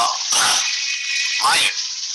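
A recorded lecture playing from a simple mobile phone's small speaker held to the microphone: a man's voice, thin and lacking bass, over a steady hiss.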